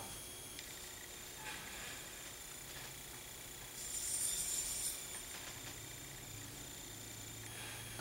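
Quiet room tone with a steady faint hiss. About four seconds in comes a soft rustle lasting about a second, as a tiny metal part is set down on a paper towel with tweezers.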